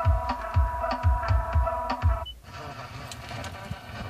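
Car FM radio playing music with a steady fast bass-drum beat and held synth notes. About two seconds in, the music cuts off as the tuner is changed to another frequency, leaving a quieter, hissier stretch.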